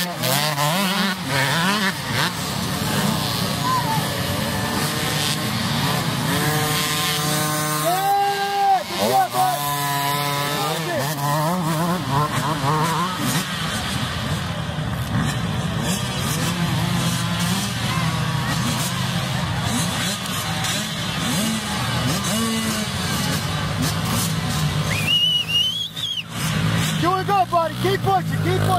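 Small youth dirt-bike engines running and revving, rising and falling in pitch, with people shouting at times.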